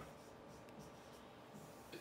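Faint scratching and tapping of a pen on an interactive whiteboard as a word is written; otherwise near silence.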